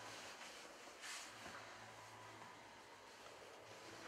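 Near silence: faint room tone with a low steady hum and a brief soft rustle about a second in.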